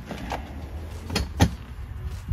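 Two sharp knocks about a quarter second apart, a little over a second in, the second the loudest, over a low steady rumble; a fainter click comes earlier.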